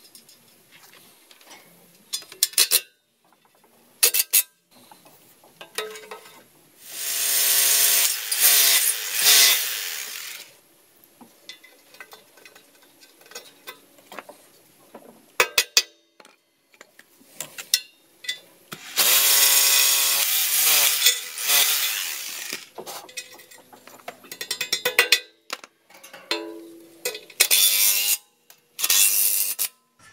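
Cordless drill running in two bursts of about three seconds each, its pitch shifting as the speed changes, with scattered sharp clicks and knocks between. This is the work of fastening a steel bracket to a concrete wall with sleeve anchors.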